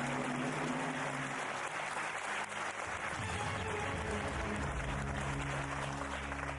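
Studio audience applauding a correct answer on a TV quiz show, with the show's music holding sustained low tones underneath.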